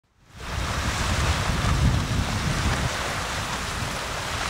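Wind buffeting the microphone in gusts over the steady wash of small surf on a beach, fading in over the first half second.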